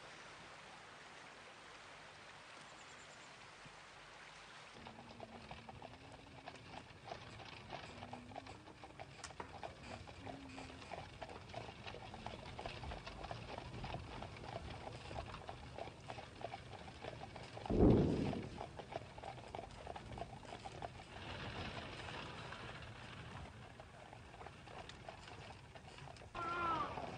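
Horse-drawn coach on the move: hooves clip-clopping with the rattle of the carriage, starting about five seconds in and running on steadily. A single louder low thump comes about two-thirds of the way through.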